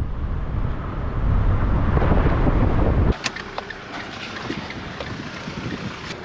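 Wind buffeting the camera microphone in a loud low rumble that stops abruptly at a cut about three seconds in. A quieter outdoor hiss follows, with a sharp click just after the cut and a few fainter clicks.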